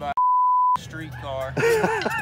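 A steady, pure censor bleep about half a second long, with the rest of the audio cut out beneath it, masking a word in speech; a person goes on talking after it.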